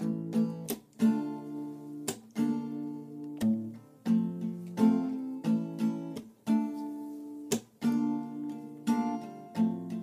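Acoustic guitar strumming chords in a slow, steady rhythm, with no voice: the instrumental intro of a song.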